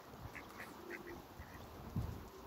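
Domestic ducks quacking faintly: about five short quacks spread over two seconds.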